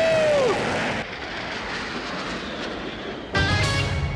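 Cartoon action soundtrack: score music under a steady jet-like rushing whoosh. A held tone bends downward and stops about half a second in, and a louder buzzing, rumbling sound cuts in near the end.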